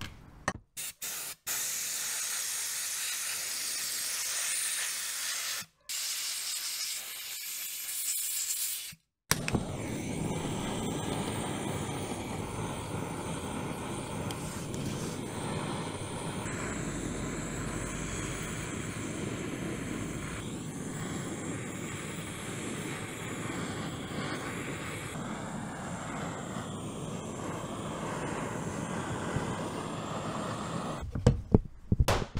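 A compressed-air spray gun hisses in bursts, cutting off briefly a few times, for about the first nine seconds. Then a handheld butane blowtorch burns steadily, heating an aluminium engine crankcase to free its ball bearings.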